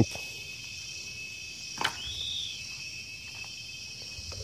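Steady high-pitched chirring of an outdoor insect chorus, with a single sharp knock a little under two seconds in and a short whistle that rises and falls just after it.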